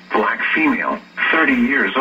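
Speech only: a voice reading out an Amber Alert from a television, with a short pause about a second in.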